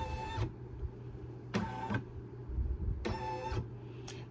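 Brother Essence embroidery machine's embroidery-arm motors whining in three short moves as the hoop is driven around the design's outline in a placement trace, over a low steady hum.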